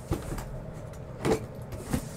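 A few short knocks and clunks from handling a wooden crate: a faint one at the start, a louder one a little past a second in, and another near the end.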